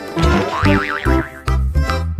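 Background music with a bouncy, regular beat of bass notes. About half a second in, a short wobbling tone rises and falls several times.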